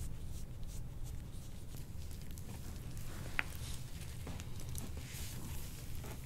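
A soft-tissue scraping tool drawn over the skin of the neck and upper back in repeated faint strokes over a low room hum, with one sharp click about halfway through.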